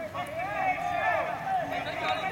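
Men's voices calling out across a football pitch, raised and pitched high like shouting, with more than one voice overlapping.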